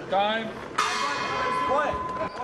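Ring bell (round gong) struck once, ringing for about a second: the signal that starts the third and final round of a kickboxing bout.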